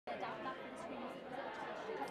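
Background chatter of many people talking at once in a large room.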